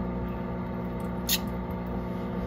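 A steady low hum made of several pitched tones, like a running motor, with one short sharp click about a second and a quarter in.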